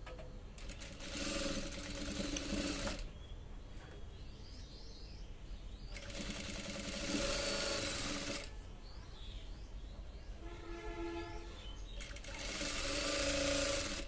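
Industrial single-needle sewing machine stitching a band collar onto a shirt in three short runs, with pauses between them as the fabric is repositioned.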